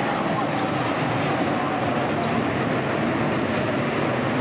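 Jet noise from an Airbus A380's four turbofan engines as it flies its display, a loud, steady rush with no change in level.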